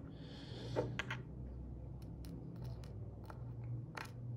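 Faint, scattered light clicks and scrapes of a stroke-magnetised nail and loose metal staples being handled on a paper-covered desk, after a short soft hiss at the start, over a steady low hum.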